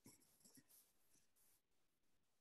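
Near silence: a gap in video-call audio, with only a faint blip or two.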